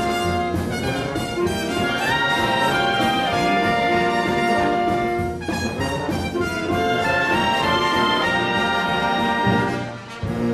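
Concert wind band playing, with brass to the fore and a trumpet standing out over the clarinets. The sound breaks off for a moment about halfway through and then picks up again.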